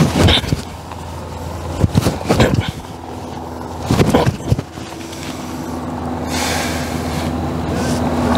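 Short sharp bursts of movement sound from a person performing Xing Yi splitting and elbow strikes, three times, over a steady low hum of vehicle traffic; a vehicle sound builds in the last couple of seconds.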